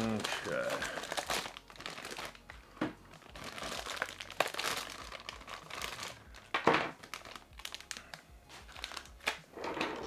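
Thin plastic packaging bag crinkling and rustling in irregular handfuls as a segmented helping-hand arm set is pulled out of it, with a few sharper crackles, the strongest about two-thirds of the way in.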